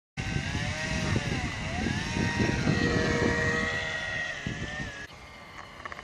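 Small homemade brushless electric motor, rebuilt from a CD-ROM drive motor, spinning a 6x3 propeller on a model airplane. It makes a whine that dips and rises in pitch over a low rumble, and cuts off abruptly about five seconds in.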